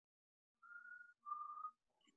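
Someone whistling two notes, each about half a second long, the second a little lower than the first.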